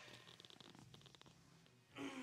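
Near silence, with faint rustling of a cotton hoodie being pulled up and off over the head.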